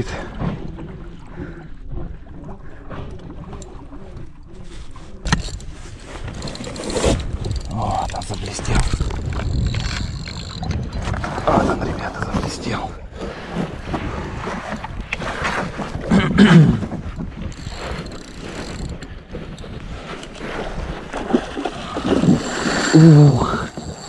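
Wind buffeting the microphone and water slapping against an inflatable boat, with a man's wordless vocal sounds at intervals while he strains at a bent spinning rod against a hooked tuna.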